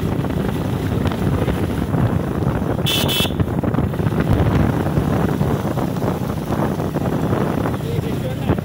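Steady wind and road noise on a moving motorcycle in traffic, with one short vehicle horn toot about three seconds in.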